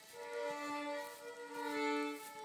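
A fiddle played with a drone: two strings bowed together, a lower note held steady under a higher one that steps down slightly about one and a half seconds in. It is fairly quiet, a player still learning to drone.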